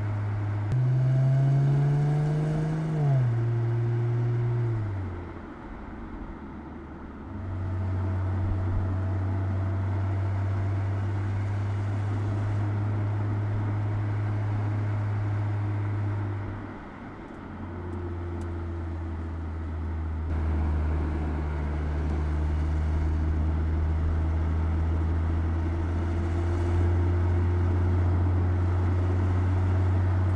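Mercedes-Benz E-Class Coupé engine running as the car drives. Its note climbs about a second in, drops back a few seconds later, and eases off briefly twice before holding steady.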